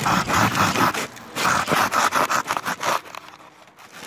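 Rough scraping and rubbing noises in two stretches, the second a little longer, dying down near the end.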